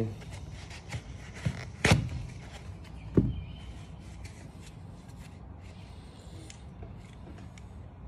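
Hands handling a brass quick-connect coupler and fittings on a soft-wash wand: a few sharp clicks and knocks, the loudest about two seconds in and another about three seconds in, over quiet rubbing.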